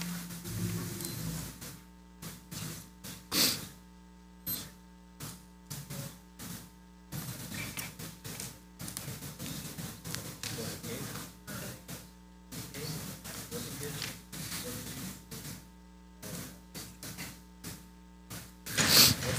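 Soft, quiet background music with held tones, under faint, indistinct voices of people talking quietly around the room, with one brief louder sound a little over three seconds in.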